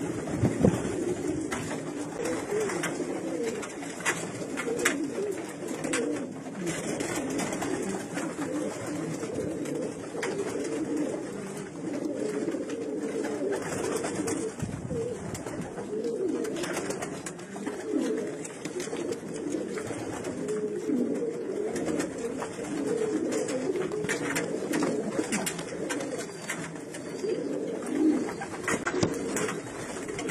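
Racing pigeons cooing continuously in a small wooden loft, their low warbling coos overlapping throughout. A short sharp knock sounds near the start.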